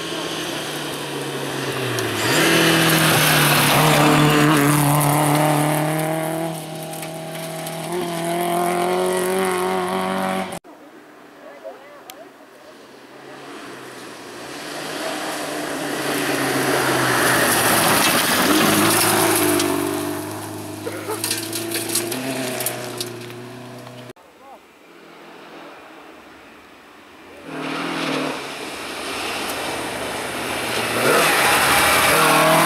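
Classic rally cars, Volvo saloons among them, passing one at a time at speed on a gravel stage: engines revving hard with pitch rising through the gears, over the hiss of tyres on gravel. There are three passes, split by two sudden cuts.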